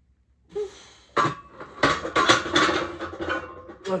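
A loaded barbell clanking into the metal J-hooks of a bench rack, a sharp clank about a second in followed by a run of clanks with metal ringing, as a bench press set is racked. A man's strained grunt or exhale comes just before the first clank.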